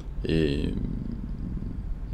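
A man's hesitation sound: a short drawn-out "eh" that trails off into a low, rattling creak in the throat, held for over a second before he speaks again.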